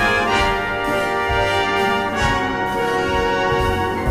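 Background music of long held notes, with a change of chord about two seconds in.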